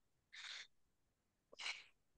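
Two short breathy hisses about a second apart, over near silence: a person breathing near a computer microphone.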